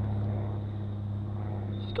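A steady low hum, like a nearby idling motor, holding one pitch without change.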